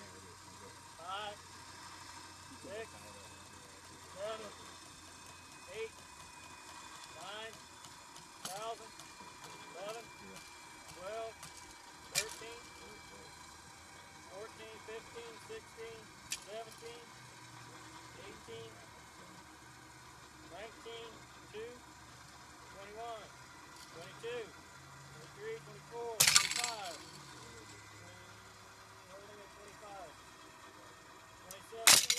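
A rope pull-test rig (rope under a 4:1 haul system and winch) being loaded toward failure: short rising-and-falling squeaks repeat about every second and a half as tension builds, with one loud sharp crack about 26 seconds in.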